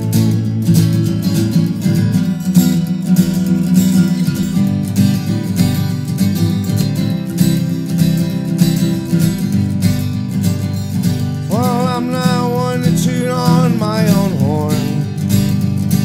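Acoustic guitar strummed steadily in a country-folk rhythm. A voice comes in singing over it about twelve seconds in.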